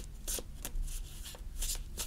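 A tarot deck being shuffled by hand, the cards passed from hand to hand in a quick run of soft slaps and rustles, a few strokes a second.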